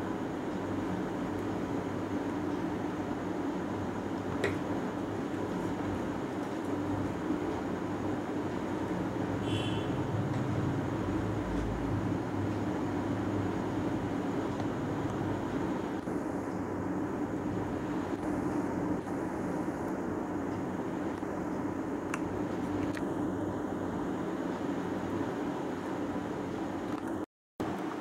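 Steady low background hum, like a fan or air conditioner running, with a few faint clicks.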